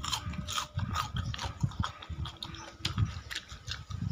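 Crispy fried potato-and-starch snack crunching, with irregular crackles over low thuds, as when it is bitten and chewed.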